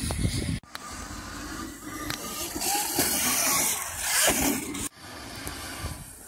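Wind rumbling on a handheld phone microphone over the distant whine and tyre hiss of two electric motocross bikes, a Milandr and an ALTA Redshift EXR, riding the dirt track. The noise swells in the middle and cuts out abruptly twice.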